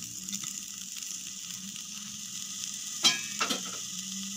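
Grated beetroot sizzling as it lands in sunflower oil in a frying pan: a steady frying hiss, with two short sharp sounds about three seconds in.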